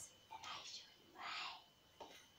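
A woman's faint whispering or breathy sounds: two short unvoiced puffs of breath, with no voiced speech.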